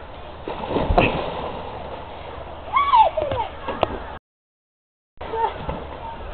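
A person dropping from a rope swing into a river: a rising rush and a splash about a second in, then shouts of excitement about three seconds in. The sound then cuts out completely for about a second.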